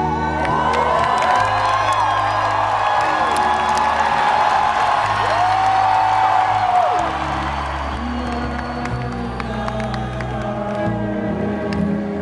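Live rock band music in a large venue: a male voice sings long drawn-out, gliding notes over held low bass notes. The crowd whoops and cheers over the music.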